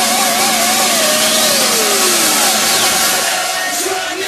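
Hardstyle electronic track: a loud, dense noisy synth wash with a wavering tone that slides down in pitch over about two seconds, easing off near the end.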